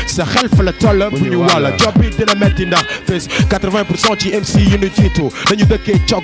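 Hip hop diss track: rapping over a beat of regular drum hits and deep bass notes that fall in pitch.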